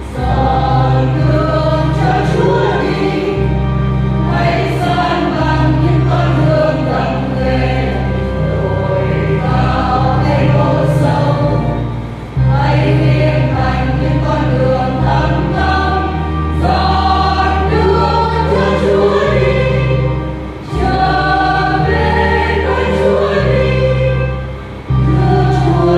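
Church choir singing a Vietnamese Catholic Advent hymn over sustained low accompaniment notes, with brief breaks between phrases about twelve and twenty seconds in.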